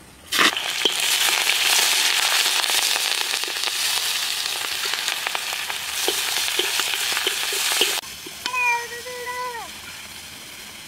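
Food frying in hot oil in a large wok over a wood fire as it is stirred with a wooden spatula: a sudden loud burst of sizzling, then a steady crackling hiss for about eight seconds that cuts off abruptly. Near the end a short high-pitched call with a falling end.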